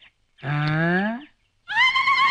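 A man's voice: a drawn-out wordless call rising in pitch. After a short pause, a long held vowel begins near the end.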